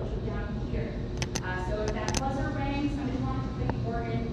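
Indistinct voices of people talking, with a few short clicks about one and two seconds in.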